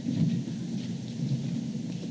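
Low, uneven rumbling room noise in a meeting hall, with no speech.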